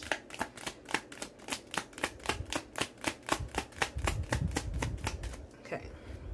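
A deck of oracle cards being shuffled by hand: a quick, even run of card slaps, about five or six a second, that stops shortly before the end.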